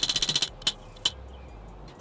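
Prize wheel spinning, its pointer ticking fast over the pegs, then slowing to a few separate clicks before the wheel comes to rest.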